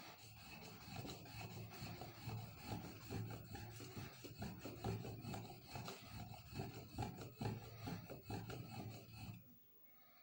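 Steel blade being stroked back and forth on a wet fine-grit whetstone: a continuous run of quick rasping sharpening strokes that stops about a second before the end.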